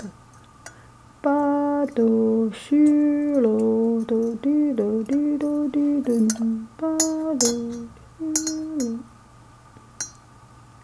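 A woman humming a slow tune in held notes that step up and down, starting about a second in and stopping near the end, with a few faint metallic clinks from a mesh tea infuser's chain moving in a porcelain teapot.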